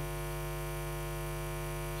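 Steady electrical mains hum with many evenly spaced overtones, unchanging in level.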